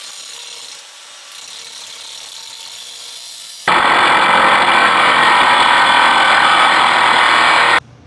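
Angle grinder with a cut-off wheel cutting steel stock clamped in a vise. A quieter stretch of cutting gives way to much louder cutting from about four seconds in, which stops abruptly just before the end.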